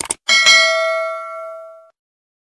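Bell-like ding sound effect: a couple of short clicks, then a bright bell tone struck twice in quick succession, ringing out and fading before it cuts off suddenly.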